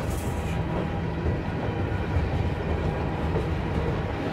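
Covered hopper cars of a freight train rolling over a steel girder railroad bridge: a steady rumble of steel wheels on the rails, with a brief hiss near the start.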